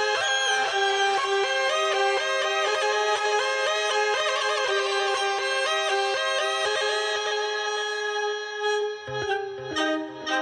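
Hurdy-gurdy playing a fast melody over a steady drone, its wheel-bowed strings sounding much like a fiddle. Near the end the quick run stops, the sound dips briefly and lower notes come in.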